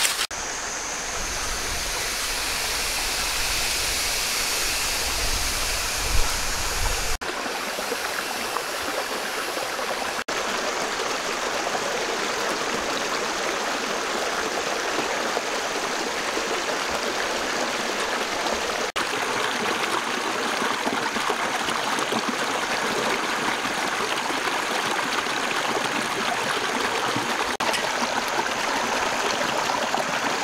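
A shallow rocky stream running over stones: a steady, continuous rush of water. The sound shifts slightly at a few abrupt cuts.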